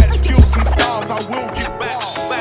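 Old-school boom bap hip hop instrumental: a hard kick drum with a deep bass note and snare hits over a looped piano sample, with no rapping over it.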